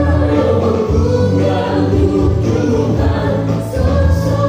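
Christian choral music playing: a choir of voices singing held notes over a strong, steady bass line.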